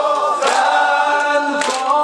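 A group of men singing a Shia devotional manqabat together in long, held lines. A sharp hit cuts through about every second and a bit.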